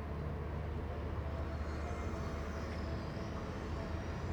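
Steady outdoor background noise with a low, even rumble, like distant vehicle traffic, and a faint thin tone coming in about a second in.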